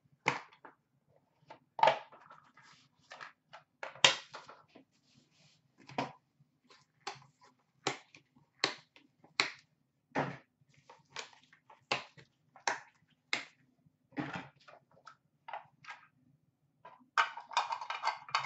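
Hands opening a cardboard trading-card box and handling rigid plastic card holders: a string of irregular sharp clicks and taps, about one or two a second, with a few brief rustles of wrapping and cardboard. A faint steady hum runs underneath.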